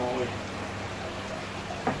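Charles Austen ET80 linear air pump running with a steady mains hum and an even hiss of air.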